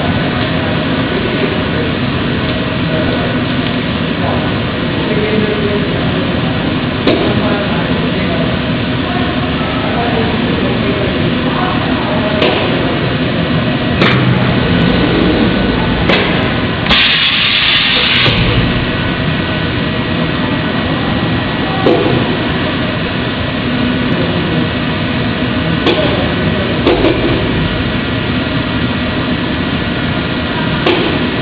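High-frequency welding and cutting machine for sport-shoe uppers at work: a steady drone with a thin whine, scattered clicks and clunks, and a burst of hiss lasting about a second and a half about halfway through.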